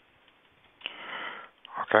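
Over a telephone line, a short breathy sniff about a second in, after a near-silent pause, followed by a voice saying "okay" at the end.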